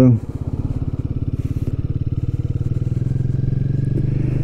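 Royal Enfield Guerrilla 450's single-cylinder engine running with a steady, even pulsing beat that grows gradually louder.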